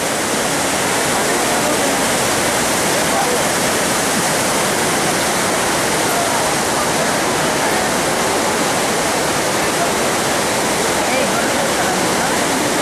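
Steady, loud rush of the Bhagirathi, a fast, silty glacial mountain river, pouring over boulders.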